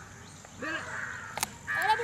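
A single short bird call about half a second in, followed by a sharp click, with a man's voice starting near the end.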